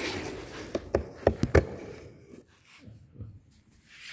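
Handling and movement noise, then a quick run of about five sharp knocks and clicks about a second in, as tools and objects are moved around on a work floor; fainter shuffling follows.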